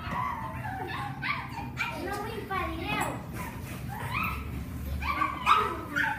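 Young children's voices imitating puppies, yapping and whimpering, with the loudest cry near the end.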